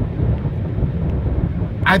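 Steady low rumble of a car heard from inside its cabin, with the start of a spoken word right at the end.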